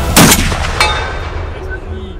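A single very loud shot from a Barrett M82A1 semi-automatic .50 BMG rifle about a quarter second in, followed by a long fading rumble. A weaker sharp crack comes just under a second in.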